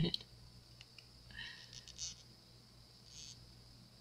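Faint handling noise: a few soft rustles and light clicks about a second and a half in and again near three seconds, over a steady faint high whine and low hum.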